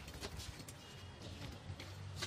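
Faint, irregular knocks from tapping a steel column formwork by hand, used instead of a poker vibrator to settle and compact the fresh concrete inside.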